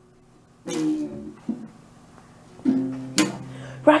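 A child's toy guitar being played by a toddler: a strum about a second in that dies away, then a held note with a sharp knock on the instrument just past three seconds.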